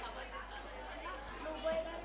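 Faint, indistinct chatter of several voices in a large room, with one voice briefly louder near the end.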